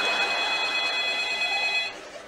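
Telephone ringing: a steady electronic ring of several high pitches sounding together, cutting off abruptly just before the end, over loud audience noise.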